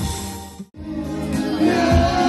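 Live party band music fades out and drops to silence for a moment just under a second in, then band music with singing comes back in at full level, as at an edit joining two takes.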